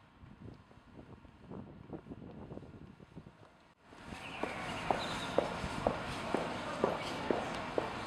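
Footsteps on a cobblestone street with general street bustle. For the first few seconds the sound is quieter, with faint irregular steps. About four seconds in it jumps louder, and sharp, regular steps come about two a second.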